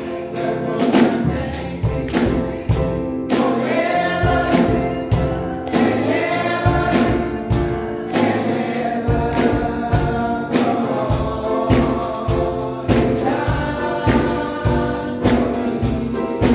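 Gospel music: a small group of women singing together with keyboard accompaniment over a steady beat of about two strokes a second.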